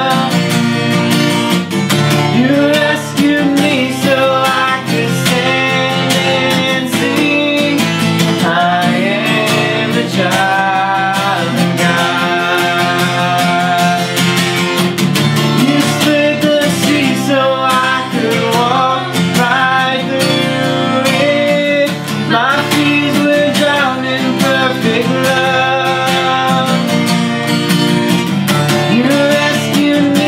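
A man and a woman singing a worship song together over a strummed acoustic guitar.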